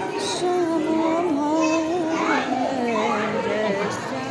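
Crowd of devotees singing a devotional chant, voices holding long notes that waver up and down without a break.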